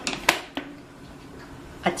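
Kitchen containers and jars handled on a countertop: two sharp knocks in the first half-second, then a faint steady hum until a voice starts at the very end.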